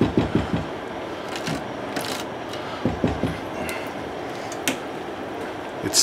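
A silicone spatula stirring dumplings in a metal saucepan, with scattered soft knocks and scrapes against the pot over a steady hiss.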